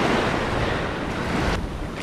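Waves washing up the sand at the water's edge, a steady rushing noise, with wind on the microphone; the rush turns duller about a second and a half in.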